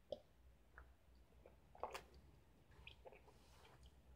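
Faint gulping and swallowing as a man drinks beer from a bottle: a few soft, scattered clicks and gulps, the most distinct about two seconds in.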